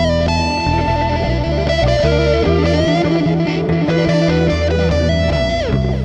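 Instrumental break in a blues recording: guitar playing held notes that slide up and down in pitch over a steady low bass line.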